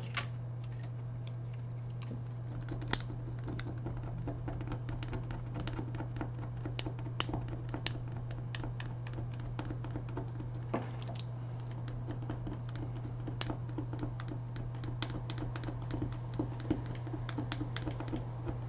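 A small plastic card scraping and clicking along the glued edge of a laptop screen bezel, worked by hand at the adhesive in an irregular run of small ticks and scratches. A steady low hum sounds underneath.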